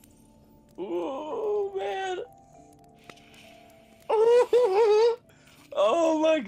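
A voice singing or wailing without words in three drawn-out, wavering phrases, the last starting near the end.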